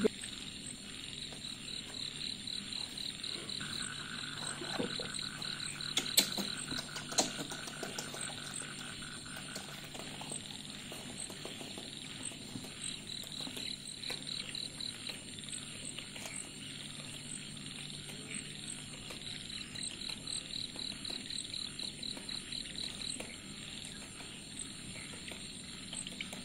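A background chorus of animal calls: rapid pulsed trills, a high one in bursts of a few seconds and a lower one running for several seconds, over a steady faint high whine. A few sharp clicks come about six and seven seconds in.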